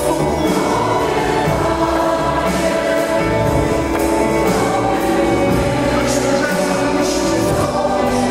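Large mixed choir singing a Christian worship song with acoustic guitar and string accompaniment, over a steady beat.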